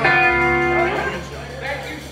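Electric guitar chord struck once and left ringing, fading away over about a second, over a low sustained bass note.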